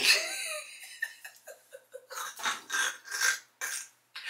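A woman laughing in a series of breathy bursts, starting with a loud burst and carrying on in short pulses.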